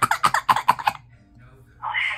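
A person's voice in a quick run of short bursts through the first second, then a lull, then a brief burst of sound just before the end.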